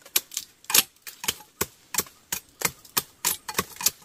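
A hooked sickle-like knife hacking at a green plant stalk in quick, uneven strokes, about four sharp cuts a second.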